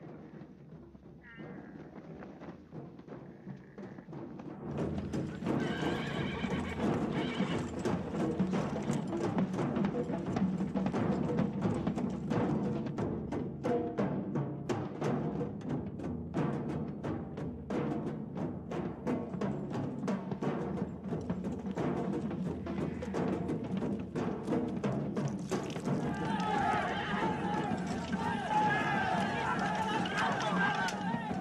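A body of horses on the move, with hoofbeats and neighing over film music. It starts quiet and grows much louder about five seconds in.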